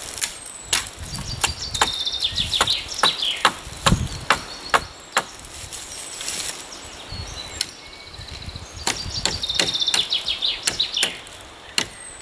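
Hatchet blows on a wooden branch, short sharp chops coming irregularly throughout, loudest and closest together around the middle. A songbird sings a quick run of high notes twice, early and again near the end.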